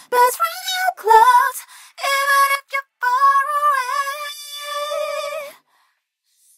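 Layered female vocal tracks (lead and background vocals) singing without accompaniment, played back through an EQ on the vocal group whose resonant low-cut filter is being swept upward, thinning out the low end. The singing stops about half a second before the end.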